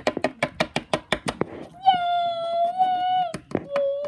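Small plastic Littlest Pet Shop toy figures tapped rapidly and repeatedly against a wooden shelf as they are hopped along. About halfway through a child's voice holds one long sung note, then a shorter, lower one near the end.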